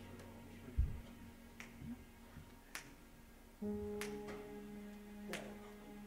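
Soft, quiet accompaniment: a few faint clicks and a low thump, then about halfway through a keyboard starts a single low note and holds it steadily.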